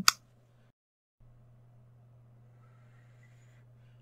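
Near silence: room tone with a faint steady low hum, opening with one short click.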